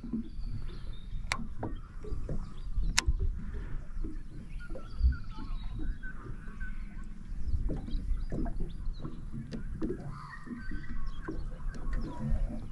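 Open-water ambience from a small boat: a low rumble of wind and water with faint bird calls, and two sharp clicks in the first few seconds.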